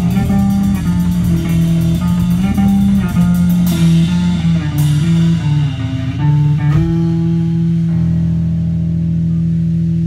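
Live punk band playing: electric guitar and bass run a shifting riff, with cymbal crashes about four and five seconds in, then a chord held ringing from about seven seconds on.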